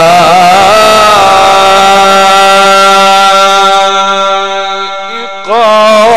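A male Qur'an reciter chanting into a microphone in the Egyptian mujawwad style. A wavering, ornamented phrase settles into one long held note that fades away around five seconds in, and a new ornamented phrase begins just before the end.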